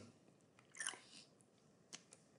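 Near silence: faint room tone with a short faint noise about a second in and a single soft computer-mouse click near the end.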